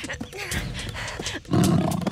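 Cartoon sabre-toothed tiger growling, with a loud growl surging in about one and a half seconds in.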